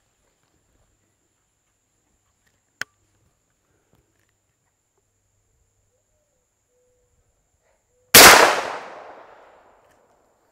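A single loud shot from a TriStar Viper G2 28 gauge semi-automatic shotgun firing a Brenneke slug, about eight seconds in; the report echoes and dies away over about a second and a half. A short click comes a few seconds earlier.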